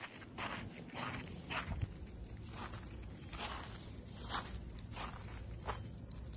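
A person's footsteps in crusted snow, walking at about two steps a second.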